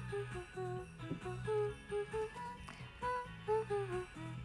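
Karaoke backing track playing the instrumental intro of a Christmas pop song: a melody of short, stepping notes over a steady bass line.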